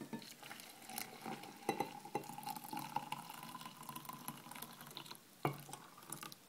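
Water poured from a glass jug into a small glass French press onto ground coffee: a faint trickling pour with a thin tone that rises slightly in pitch over a few seconds. There are a few light glass knocks along the way.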